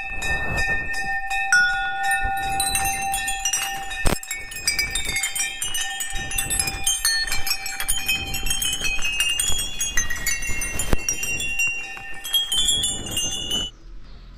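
Many small metal temple bells hung along a path railing ringing one after another, their clear tones of different pitches overlapping and fading, with a few sharper clangs among them.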